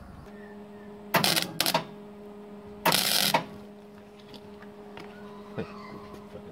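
Stick (arc) welder striking its arc on an aluminium crankcase half: three short crackling bursts in the first half, the last the longest, over a steady hum.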